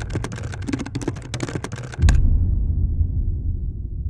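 Typewriter-style keyboard typing sound effect, a quick run of clicks as an on-screen caption is typed out, stopping about two seconds in. A low rumbling drone sits underneath and swells when the typing stops.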